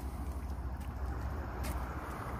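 Steady low rumble of wind buffeting the phone's microphone outdoors, with faint background hiss.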